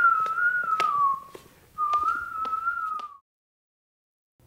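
A person whistling a short, gently wavering tune in two phrases, with a few light taps alongside. The whistling stops about three seconds in.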